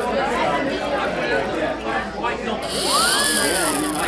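A yellow plastic toy whistle held in a man's mouth, sounding with his breath as a mock snore: about three seconds in a breathy whistle rises and then falls in pitch. Steady crowd chatter runs underneath.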